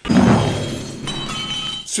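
Crash sound effect: a sudden heavy impact with shattering glass, loudest at the start and fading, with glass pieces ringing from about halfway through.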